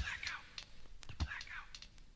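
Quiet closing moments of a hip-hop track: short, soft vocal phrases over a sparse kick drum that hits at the start and again just past a second in.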